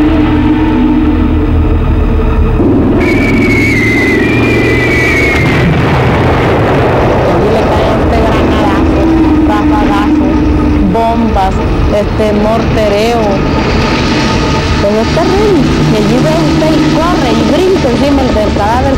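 Agitated voices shouting and wailing over a steady low rumble, with a high wavering cry about three to five seconds in.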